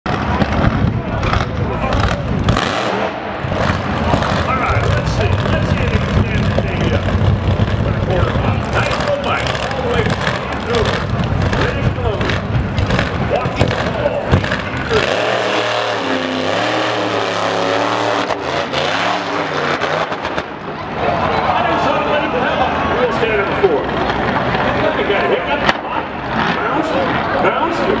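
Drag-racing PT Cruiser wheelstander's engine running and revving at the starting line, mixed with a track announcer's voice over the public address.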